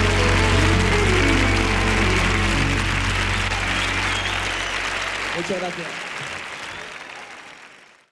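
Live audience applauding at the end of the song, over the band's last held chord, which dies away about five seconds in; the applause then fades out near the end.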